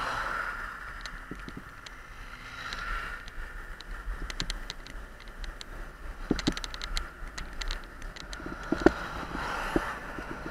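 Riding noise from a bicycle: steady wind and road rumble with scattered sharp clicks and rattles.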